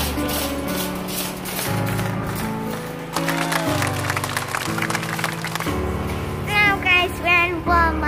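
Background music with a steady beat over a bass line that changes note about once a second; a high, wavering melody comes in near the end.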